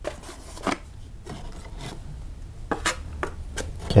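Steel drywall taping knife scraping and spreading joint compound along the edges of a drywall patch: a handful of short, irregular scraping strokes.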